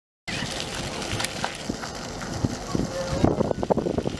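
Water jets of a splash-pad fountain spraying and splattering onto wet pavement, with children's voices and shouts coming in near the end.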